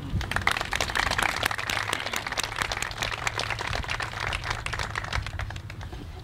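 Audience applauding: a dense run of claps that starts just after the opening and thins out near the end.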